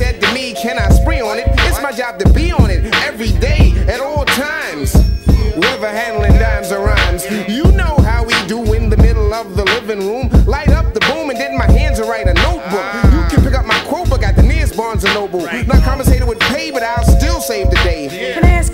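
A hip hop track: a rapper's vocal over a steady drum beat with held instrument tones.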